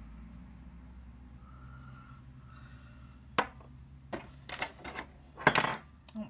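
A can clattering: a sharp clink about three and a half seconds in, a few knocks, then a louder clatter near the end.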